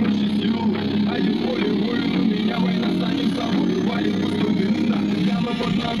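JBL Charge 4 portable Bluetooth speaker, its passive bass radiator exposed, playing a bass-heavy song loudly and steadily. A sung word comes in just at the end.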